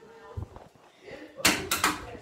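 A quick run of about three loud knocks or bangs, close together, about halfway through, over quiet room sound.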